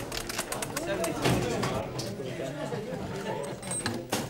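Overlapping, indistinct chatter of many men in a room, with small metallic clicks and taps from a pigeon racing clock's mechanism being handled, most of them in the first second or so.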